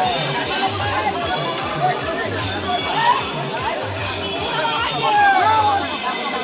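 A dense crowd of many voices shouting and chattering at once, over a steady, repeating low drum beat.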